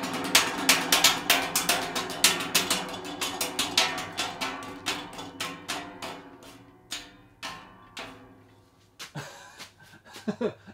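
Sharpened metal ceiling-fan blades striking a ballistic-gel hand held in their path: a rapid run of slapping hits over the fan motor's hum. The hits slow and fade over several seconds as the hand drags the fan toward a stop.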